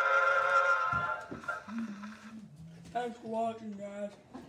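Acoustic recording of a mixed chorus played from a Blue Amberol cylinder on an Edison phonograph, holding a final chord that cuts off about a second in as the record ends. After it a voice makes drawn-out low hums.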